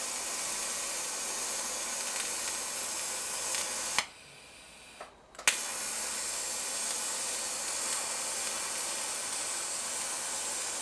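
TIG welding arc on stainless steel, a steady hiss. It cuts off with a click about four seconds in, and after roughly a second and a half of quiet the arc strikes again with a sharp crack and the hiss resumes.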